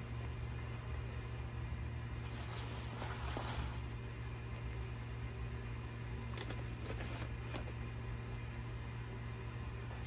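Potting soil rustling and crumbling as hands press it in around a plumeria cutting in a pot, loudest about two to four seconds in, with a few soft ticks later. A steady low hum runs underneath.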